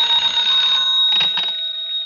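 Telephone bell ringing steadily for about a second and a half, then stopping, with a couple of clicks just before it ends.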